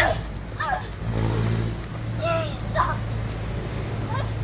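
Staged fight scuffle: a sharp thud at the very start, then short shouted cries, over a low steady hum from about a second in.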